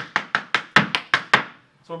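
Irish dance hard shoes striking a wooden dance floor: a quick, uneven run of about eight sharp taps over a second and a half, then they stop.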